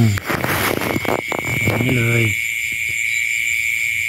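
Steady, unbroken high-pitched trill of night insects in a rice paddy, with a second or so of rustling noise near the start.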